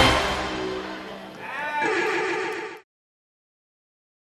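Dance music fades out over about a second, then a horse whinny sounds for about a second in the mix before everything cuts off suddenly, a little under three seconds in.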